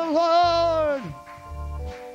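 A woman singing a long note with wide vibrato into a microphone. It slides down in pitch and breaks off about a second in. Under it, an instrumental accompaniment of held notes and a steady low bass pulse.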